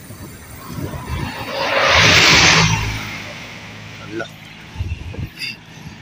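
A vehicle passing close by: a rushing noise that swells and fades over about two seconds. Under it is the low, steady running of the motorcycle being ridden.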